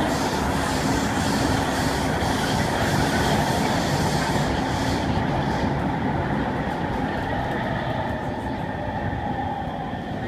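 Cabin running noise of a Kawasaki C151 MRT train in motion: a steady rumble of wheels on rail and car body. It grows duller about halfway, then eases off gradually toward the end.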